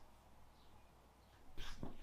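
Near silence: room tone, with a short, faint noise near the end.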